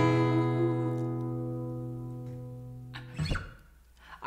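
Final strummed chord on an acoustic guitar ringing out and slowly fading. A little after three seconds in, it is cut off by a short brushing noise.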